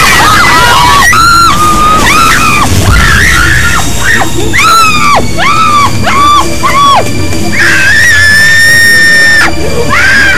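High-pitched screaming and wailing women's voices: a string of short cries that rise and fall, then one long held scream near the end, over background music.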